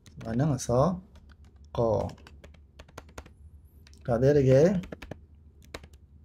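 Computer keyboard typing: scattered single keystroke clicks throughout, with a voice speaking in three short bursts, soon after the start, at about two seconds and around four seconds.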